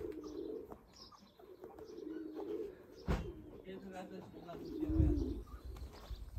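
Doves cooing in a repeated low, wavering call, with small birds chirping. A sharp knock about three seconds in and a low thump about five seconds in.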